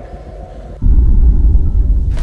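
A loud, deep rumble from a film soundtrack cuts in suddenly a little under a second in and holds steady: a low-end cinematic sound effect.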